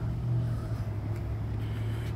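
Steady low mechanical hum of a running motor, even in pitch and level, with no distinct events.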